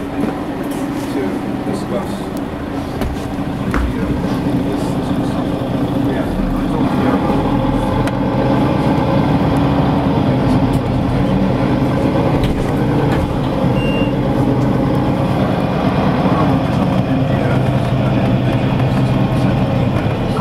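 City bus running along a street, heard from inside, its engine a steady drone that grows louder about six seconds in.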